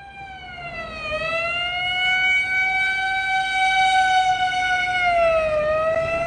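A single long, siren-like wailing tone that swells up over the first two seconds, then holds steady. It sags slightly in pitch twice, about a second in and again near the end.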